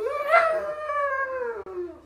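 A pug howling once: one long note that rises briefly and then slides slowly down in pitch.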